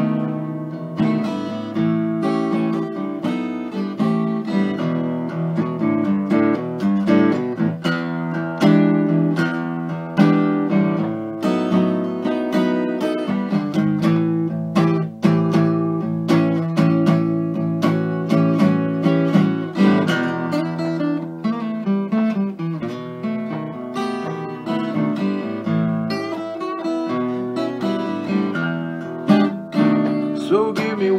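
Solo acoustic guitar playing an instrumental blues break, a run of picked notes mixed with strummed chords.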